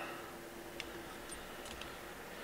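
Quiet room with a faint steady hum and a few faint, light ticks as fingers handle the tying thread at the fly-tying vise for a whip finish.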